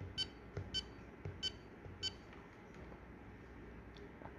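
Handheld digital oscilloscope's key beeps: four short electronic beeps about half a second apart, one for each button press as the timebase setting is stepped down.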